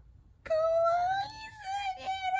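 A baby's long, high-pitched vocal wail, held on one slightly wavering note. It starts about half a second in, dips briefly around the middle, and carries on.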